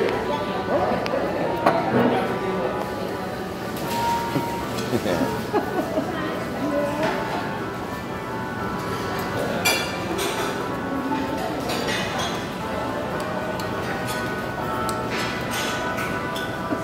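Restaurant dining-room ambience: background music and the chatter of other diners, with a few sharp clinks of glassware and tableware, two close together about ten seconds in.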